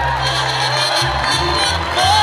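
Mariachi band playing live, violins over a bass line, in a short instrumental passage, with the crowd cheering.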